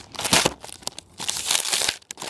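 Foil-and-plastic biscuit wrapper crinkling as it is pulled open by hand, in two spells: a short one right at the start and a longer one in the second half.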